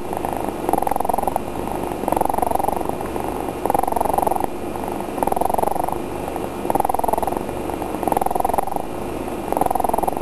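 Domestic cat purring in her sleep, a steady rumble that swells and eases in an even cycle about every second and a half.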